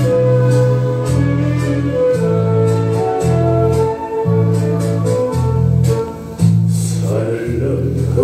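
A recorded song's instrumental introduction: sustained keyboard chords over a bass line stepping from note to note. A singing voice comes in about six and a half seconds in.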